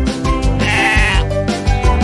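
A sheep bleat sound effect: one wavering call of about half a second, a little after the start, over background music.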